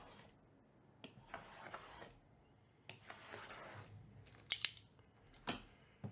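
Shrink-wrapped cardboard trading-card boxes scraping and rustling against each other as one is pulled from a stack, with a few sharp taps in the second half.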